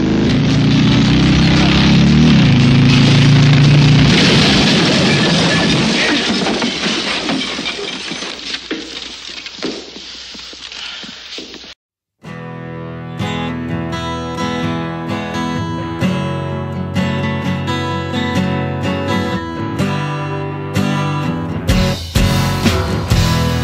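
Harley-Davidson V-twin chopper engine running loudly and revving up about two seconds in, then fading over the next several seconds. A sudden cut follows, then rock music with guitar.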